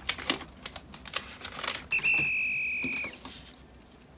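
Paper pages of a workbook being leafed through, with quick rustles and flicks, then a single steady high electronic beep lasting about a second, the loudest sound here, dipping slightly just as it stops.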